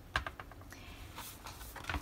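A thick paper planner being handled over a leather cover: a few light clicks and paper rustles as the book is turned and opened.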